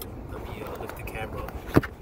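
Car road noise heard from inside the cabin while driving: a steady low rumble. A single sharp knock comes near the end.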